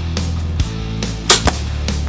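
A single sharp snap a little past a second in, from a BowTech Assassin compound bow shooting an arrow, over rock background music with guitar.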